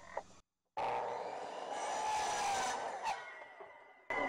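Hitachi C10FCE miter saw running through a 45-degree cut in a piece of door trim. It starts suddenly about a second in and dies away after about three seconds.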